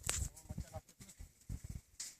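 Irregular low knocks and rumbles of a phone being handled and swung around while it records, with a faint distant voice near the start.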